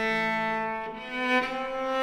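Solo cello bowed in a slow, quiet phrase of long held notes: a held note fades about halfway through, a brief lower note follows, then a higher note swells toward the end.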